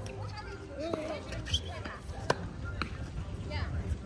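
Tennis ball struck by rackets and bouncing on a hard court during a rally: a few sharp hits and bounces, the last ones about half a second apart, past the middle.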